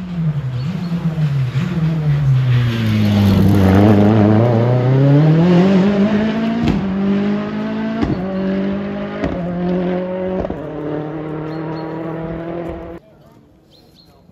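Rally car passing close on a special stage. Its engine note falls as it slows in, then climbs again as it accelerates away, with four sharp cracks about a second apart. The sound cuts off abruptly near the end.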